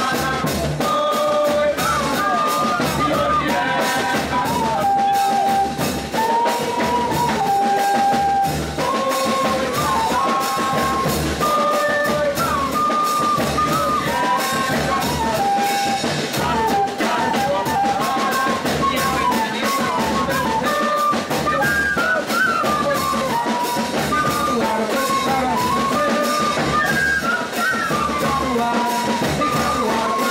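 A pífano band playing: several cane fifes carry a lively melody, two lines moving together in harmony, over a steady zabumba bass-drum beat.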